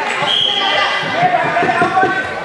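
Handball game in a sports hall: players and onlookers shouting and calling out, with thuds of the ball and feet on the court floor echoing in the hall. A brief high-pitched tone sounds about half a second in.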